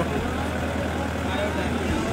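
A boat's engine running with a steady low hum, without a break.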